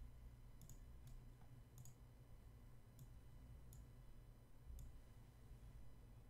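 Faint computer mouse clicks, about half a dozen spread irregularly over a few seconds, over near-silent room tone.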